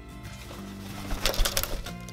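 Background music, with a loud flurry of wingbeats lasting just under a second, starting about a second in, as a male eclectus parrot takes off from a shelf.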